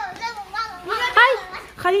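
Young children's voices speaking indoors, in two short stretches of high-pitched talk.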